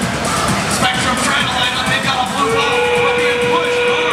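Arena music and crowd noise, with a steady horn-like tone that starts about two and a half seconds in and holds. It is most likely the field's end-of-match signal.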